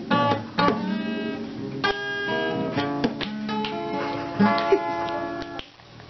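Acoustic guitar played solo, strummed and picked chords with the notes ringing on. The playing thins out into a brief lull just before the end.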